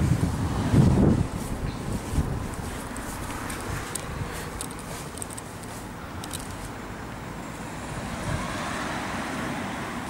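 Steady outdoor background noise of road traffic, with a low buffet of wind on the microphone in the first second and a vehicle passing as a gentle swell near the end.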